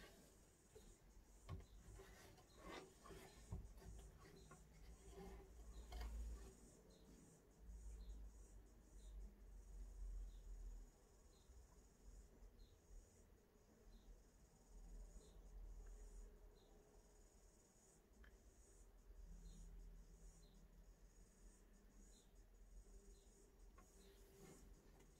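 Faint brushing and scratching of a paintbrush on canvas as paint is blended, with a soft high chirp repeating about once a second from a few seconds in.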